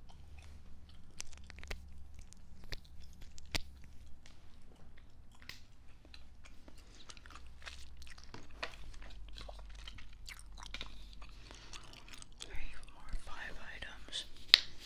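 Bubble gum being chewed close to the microphone: a steady run of short, wet mouth clicks, growing louder near the end.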